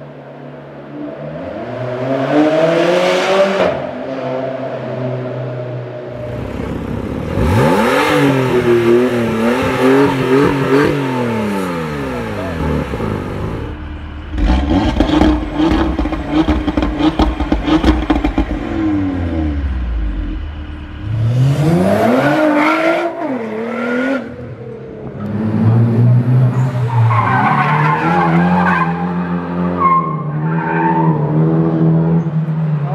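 Several different car engines in turn, revving and accelerating with their pitch rising and falling. Around the middle comes a stretch of rapid crackling over a steady engine note, and near the end tyre squeal from a drifting car.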